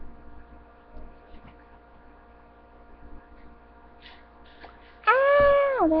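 Steady electrical hum with a few faint clicks. About five seconds in, a young female voice lets out a loud, drawn-out cry of pain that falls in pitch.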